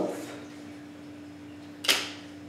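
A steady hum, then a single sharp plastic click near the end, from a DVD case being handled.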